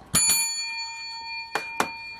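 A small bell struck once, ringing on with a clear high tone that slowly fades, marking a winning scratch ticket. Two short clicks come in the second half of the ring.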